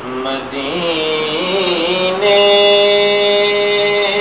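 A man's voice reciting a naat, drawing out a long wordless melismatic phrase that winds up and down, then holding one steady note through the last couple of seconds.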